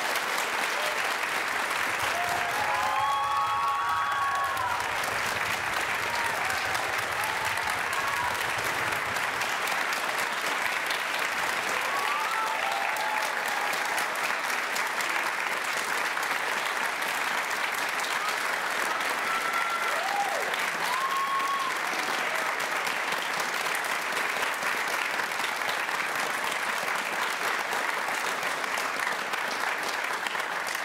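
Auditorium audience applauding steadily after a string orchestra piece, with a few cheers and whoops rising above the clapping now and then.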